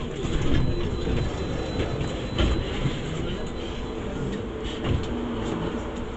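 Inside a stationary London double-decker bus at a stop: the engine runs at idle with a steady low rumble, and a few knocks and thumps come from inside the bus.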